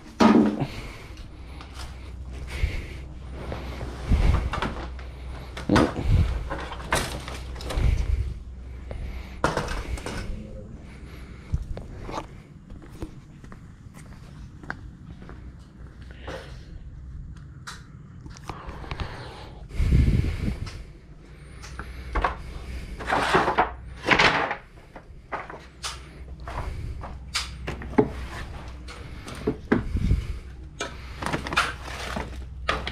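Irregular knocks, clunks and thuds of household items and an aluminium ladder being handled and shifted about in a cluttered garage, with footsteps, over a steady low hum.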